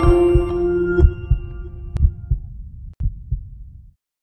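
Heartbeat sound effect in a closing logo sting: four lub-dub double beats about a second apart, over a held musical chord that fades away during the first two seconds or so. Everything cuts off abruptly just before the end.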